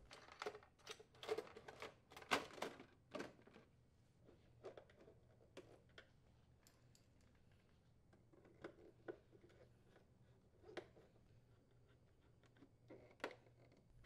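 Faint, scattered clicks and light knocks of a plastic refrigerator dispenser housing being set in place and its screws turned in by hand with a screwdriver. They cluster in the first few seconds, then come only now and then.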